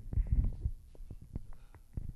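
Handling noise close to the microphone: a quick, irregular run of low thumps and knocks, loudest in the first half-second and fainter after, as an object is picked up.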